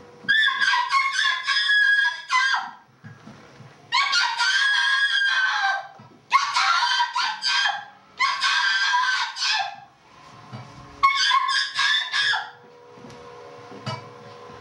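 High-pitched vocal screams, five long wavering shrieks with short breaths between them, like an animal howling.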